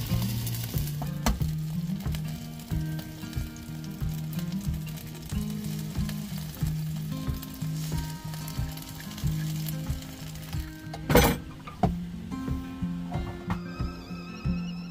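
Sausages, black pudding and eggs sizzling steadily in a non-stick frying pan, with background music underneath. A single sharp knock about eleven seconds in.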